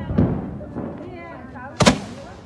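Two Diwali firecracker bangs: a heavy, deep one about a quarter-second in, and a sharper, louder crack near the end.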